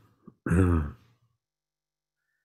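A man clearing his throat once, a short voiced sound lasting about half a second.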